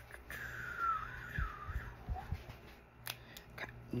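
Small clicks and light handling noises of an eyeliner pencil being capped and turned in the fingers, with a sharp click about three seconds in. A faint, thin, high wavering tone sounds during the first couple of seconds.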